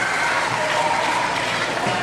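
Audience applauding steadily, with scattered voices calling out over the clapping.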